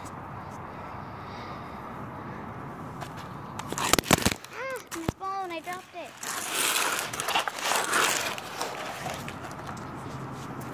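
Two sharp knocks, followed by a short run of rising-and-falling vocal sounds and then a few seconds of rustling and scraping as the phone is moved about.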